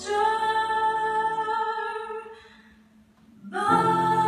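A woman singing a held note of a slow gospel ballad over piano accompaniment. The note fades away about two and a half seconds in, and after a short hush the music comes back in near the end.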